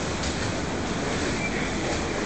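Steady background noise of an indoor swimming pool: water moving and the pool hall's general din blended into a continuous rush.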